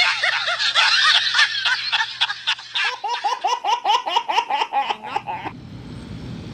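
Loud, hearty laughter, dense at first, then a fast run of 'ha-ha-ha' pulses, about five a second, that cuts off suddenly near the end.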